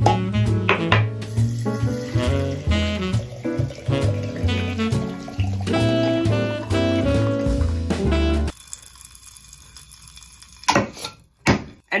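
Background music with a bass line for about eight and a half seconds. After it stops, liquid can be heard running into a glass jar as tequila is poured over Pop Rocks. A couple of sharp knocks come near the end.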